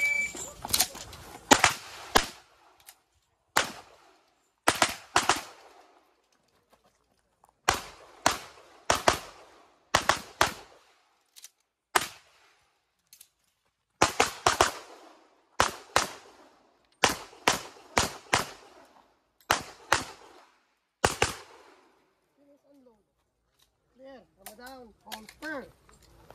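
A shot timer's start beep, then a pistol fired in rapid pairs and short strings with brief pauses between groups, for about twenty seconds. A man's voice follows near the end.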